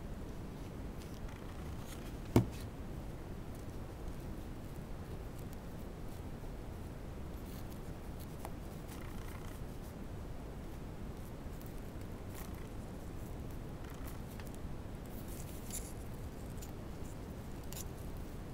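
Faint rustling of crinkle ribbon being pleated and pressed down by hand, over a steady low background hiss, with a single sharp click about two seconds in.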